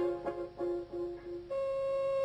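Quiz-show time-up signal: a few short electronic notes in quick succession, then one long steady held tone starting about a second and a half in, marking that the ten seconds to answer have run out.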